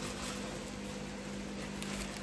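A steady low hum over faint room noise, with no distinct events.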